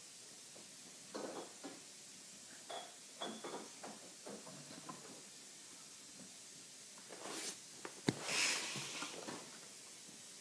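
Faint scattered knocks and soft rustling, then a sharp click about eight seconds in followed by a brief hiss.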